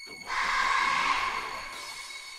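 Beatless breakdown in a hard house/hardcore DJ mix: a swell of noise with steady high tones comes in suddenly about a quarter second in and slowly fades, with no kick drum.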